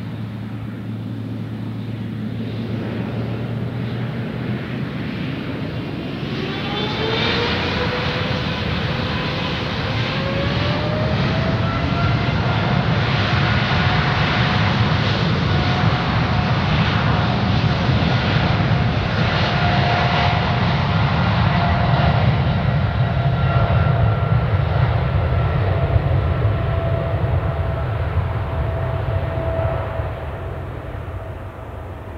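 Boeing 777-300ER's GE90 turbofans spooling up to takeoff thrust for the takeoff roll. A rising whine starts about six seconds in and levels off about twelve seconds in, over a deep rumble that grows louder.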